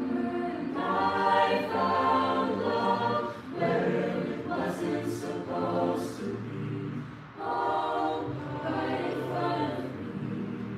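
Mixed-voice a cappella group singing sustained, wordless-sounding chords over a low sung bass line. It drops away briefly about seven seconds in, then comes back in.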